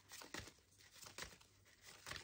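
Faint rustling and a few light ticks of a tarot card deck being picked up and handled.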